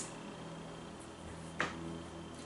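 Quiet room tone with a faint steady hum, broken once by a single short, sharp click about one and a half seconds in.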